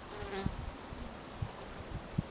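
Bumblebee wing buzz as a bee flies close to the microphone: a brief higher buzz near the start, then a lower one about a second in, with a couple of short low thumps.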